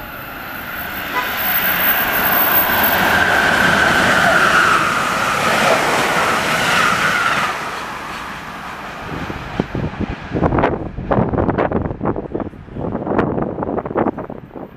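Amtrak Keystone train, led by an ACS-64 electric locomotive, passing at high speed: a swelling rush of wheels on rail with a whine, loudest from about two to seven seconds in, fading as the train goes by. In the last few seconds, irregular gusts of wind buffet the microphone.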